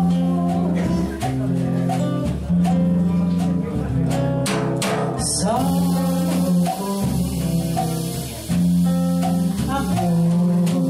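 Live bossa nova: a cutaway nylon-string acoustic guitar plays chords with a woman's voice singing into a microphone over it, and light percussion strokes around the middle.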